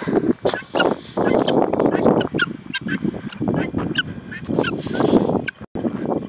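Domestic helmeted guinea fowl calling, a rapid, overlapping string of harsh, grating cackles, several a second, that breaks off suddenly near the end.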